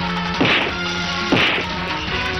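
Two dubbed film fight sound effects of blows landing, about a second apart, each a sharp whack with a short downward swish, over sustained background music.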